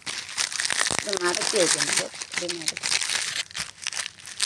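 Close, crackling rustle of handling noise throughout, with a person's voice speaking briefly in the middle.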